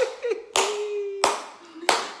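A woman clapping her hands while laughing: about four sharp claps, roughly two-thirds of a second apart, with her laughing voice held on one note between them.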